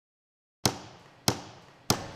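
Dead silence, then three sharp knocks about 0.6 s apart, evenly spaced, each with a short echoing tail that dies away before the next.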